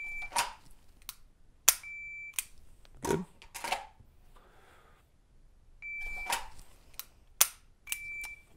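Shot timer beeping a short high start tone and then the par tone two seconds later, heard twice. Between each pair, a pistol is drawn from its holster with a rustle, and its trigger is dry-fired with a sharp click just before the par beep.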